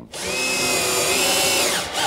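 Cordless drill-driver running for about a second and a half, driving a screw into a concealed cabinet hinge. The motor whine holds steady, then winds down near the end as the screw seats.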